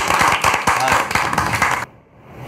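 A small group of people clapping their hands, with voices calling out over the claps. The clapping and voices cut off abruptly near the end.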